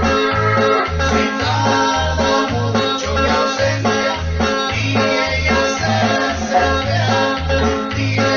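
Norteña band playing live, an instrumental passage: low notes bounce between two pitches about twice a second under sustained chords and melody.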